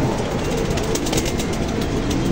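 Strong wind buffeting the microphone: a steady rumbling rush with faint rapid clicks above it.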